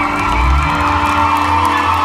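Live band and backing track holding a sustained final chord over a steady bass note while the audience cheers and whoops.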